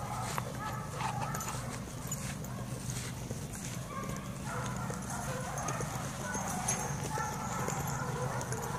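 Several dogs playing together on grass and bare dirt: scattered paw steps and short scuffling sounds over a steady low hum.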